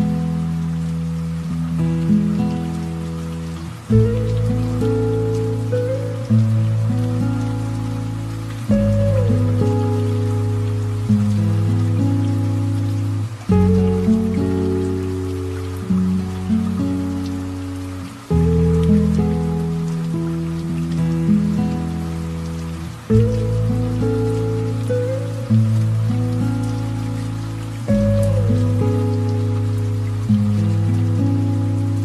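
Slow, gentle piano music: a chord struck about every five seconds and left to fade, with lighter notes in between. A light rain sound with scattered drops runs underneath.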